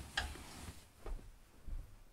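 Faint handling sounds as a person gets up from a wooden bunk bed: a sharp click just after the start, then soft low thumps about a second in and again near the end.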